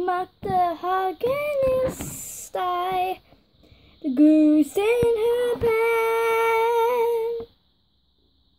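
A child singing in a high voice without clear words: short sliding phrases, then one long held note that stops about seven and a half seconds in.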